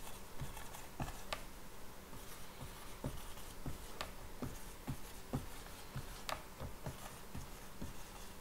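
Marker writing quickly on a whiteboard: a steady run of short, irregular taps and scratches as one short word is written over and over.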